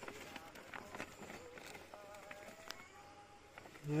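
Faint rustling of a plastic sack and scattered soft slaps and clicks as a catch of small fish slides out onto bare rock. A man starts speaking right at the end.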